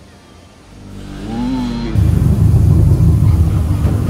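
Deep, loud rumbling growl of an animatronic dragon in a dark show cave, played through the attraction's sound system. It swells in from about a second in and becomes a heavy, continuous low rumble at about the halfway point.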